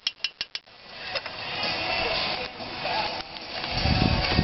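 A quick run of about five light clinks, like a fork tapping against an aluminium stock pot, followed by a steady noisy hiss.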